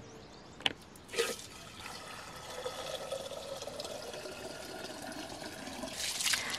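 Water running steadily into a plastic bucket, starting about two seconds in, after a sharp knock and a short splash in the first second and a half.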